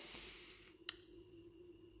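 Near silence with room tone, broken by a single short click a little under a second in.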